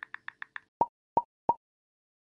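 Animated end-card sound effects: a quick run of short high ticks, about seven a second, as the lettering types out, then three louder plops about a third of a second apart.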